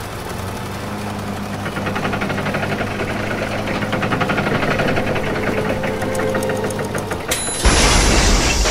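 Engine sound effect for a cartoon machine: a steady low hum with fast rhythmic knocking that grows louder. Near the end it cuts off and gives way to a loud burst of noise as the machine blows out smoke.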